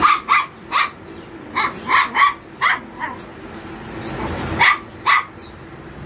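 Puppy barking: about ten short, high yaps, most of them in a quick run over the first three seconds, then two more after a pause, about four and a half and five seconds in.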